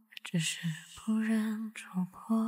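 Soft, breathy female voice singing a slow ballad, held notes on a steady low pitch broken into short phrases.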